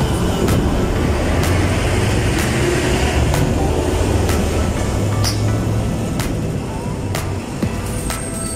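Steady engine and road traffic noise from moving along a busy street, with a low hum throughout and music playing underneath.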